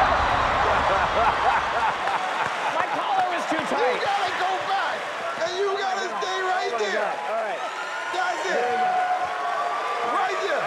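Studio audience and judges laughing loudly, many voices overlapping, with some clapping. A music bed underneath cuts off about two seconds in.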